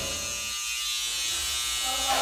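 Electric hair trimmer buzzing steadily as it is worked around a man's face during a haircut.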